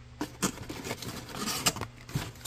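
Crinkling and scraping of crumpled packing paper and a plastic-and-card lure package as a hand digs into a cardboard shipping box and pulls the package out: a quick run of small crackles and rustles.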